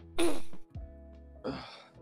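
A person clearing their throat twice, the first time louder, over background music.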